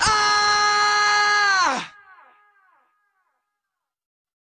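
A male singer's final held, belted note (the song's closing scream), steady and high for almost two seconds, then sliding down in pitch and cutting off into a short fading echo. The song ends there, and silence follows.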